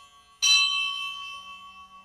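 A bell struck once about half a second in, its ringing partials fading away steadily.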